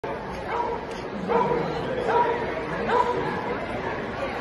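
Dog barking about four times, roughly a second apart, while running an agility course, over the chatter of a crowd in a large hall.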